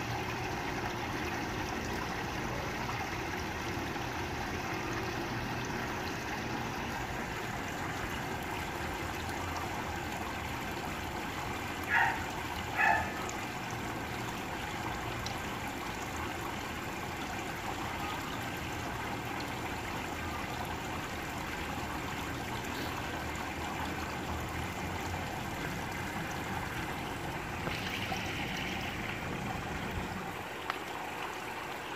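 Steady trickle of water circulating in a backyard aquaponics fish tank. About twelve seconds in come two short high-pitched sounds about a second apart.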